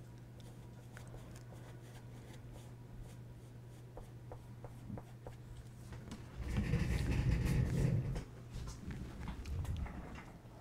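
Quiet room with a steady low electrical hum and faint handling clicks; about six and a half seconds in, a second and a half of louder rustling and scraping as the painted canvas is handled and lifted off the wooden table.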